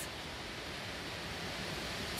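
Steady wind noise on the microphone outdoors: an even rushing hiss with no distinct events.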